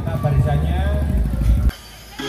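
A voice over loud music with a heavy, steady bass from a parade sound system; it cuts off abruptly near the end.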